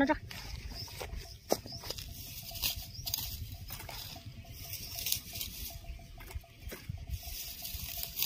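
Fern fronds and grass rustling, with small snaps and clicks, as they are pulled and handled, over a low wind rumble on the microphone.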